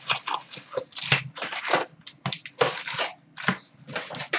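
Cardboard and card packs from a Black Diamond hockey card box rustling and crinkling in quick, irregular bursts as the packs are handled and pulled out.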